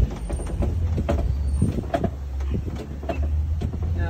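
Safari ride truck running with a steady low rumble, with scattered light rattles and knocks from the vehicle body.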